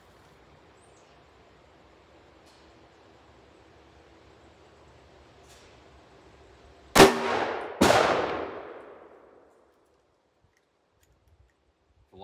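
A .44 Magnum Taurus Tracker revolver with a four-inch barrel fires one loud shot about seven seconds in. A second sharp crack follows under a second later and trails off over about a second and a half.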